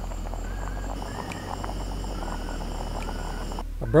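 Backpacking canister stove burning under a pot of boiling pasta, a steady hiss and bubbling, with faint short chirping calls repeating in the background. The sound cuts off just before the end.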